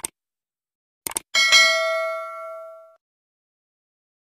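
Subscribe-button sound effects: a short click, then a quick double click, then a single bell ding that rings out and fades over about a second and a half, the notification-bell chime of the animation.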